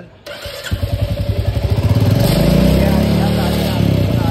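A Royal Enfield Bullet's single-cylinder engine starts up under a second in. It then runs with a quick, even beat that grows louder over the next second and holds steady.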